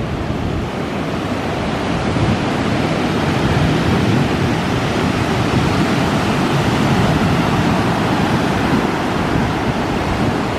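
Ocean surf breaking just offshore and washing up the sand at the water's edge: a steady rushing wash that grows a little louder after the first couple of seconds.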